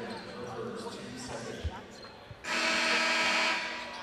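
Basketball arena ambience of crowd noise and court sounds, then about two and a half seconds in a steady arena horn sounds for about a second.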